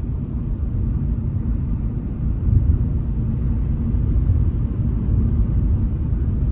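Steady road and engine rumble heard inside a car cabin while cruising at about 60 km/h at low revs.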